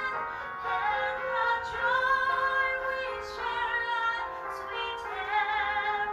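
Music: a woman singing a slow melody with long held notes.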